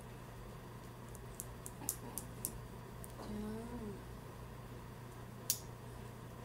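A few sharp, light clicks, a cluster about one and a half to two and a half seconds in and a louder single one near the end, from plastic makeup items being handled. Between them, about three seconds in, comes one short pitched sound under a second long that bends upward at its end.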